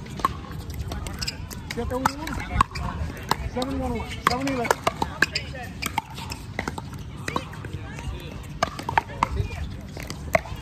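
Pickleball rally: an irregular string of sharp pops from paddles striking the hollow plastic ball.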